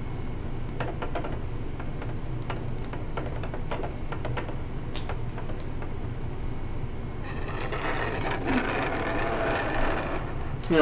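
The film's soundtrack heard faintly over a steady low hum, with scattered light clicks in the first half. From about seven seconds in, a denser, busier sound builds with some pitched content.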